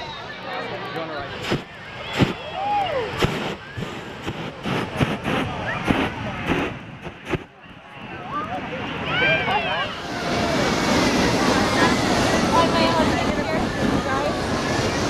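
Crowd voices with a run of short sharp knocks or pops in the first half. From about ten seconds in, a hot air balloon's propane burner fires as a steady loud rushing noise under the voices.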